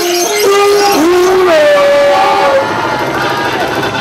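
A vocalist singing long, drawn-out, bending notes into a microphone through a club PA, with the backing music thinned out. Near the end the voice drops away into a noisier wash of music and crowd.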